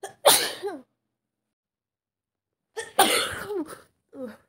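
A woman with a cold gives two loud, explosive bursts of cold symptoms, about three seconds apart. Each has a brief lead-in and ends in a falling voiced tail.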